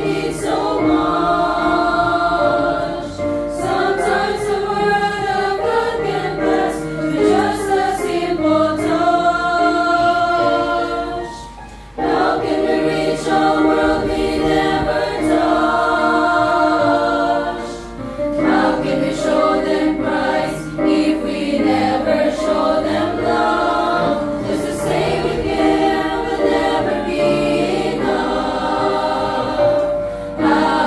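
Young women's choir singing in three-part treble harmony (soprano, soprano, alto) over a recorded accompaniment track, with a short break between phrases about twelve seconds in.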